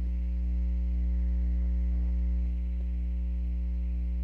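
Steady electrical mains hum from the laptop running on its plugged-in charger: a low drone with a stack of higher buzzing overtones.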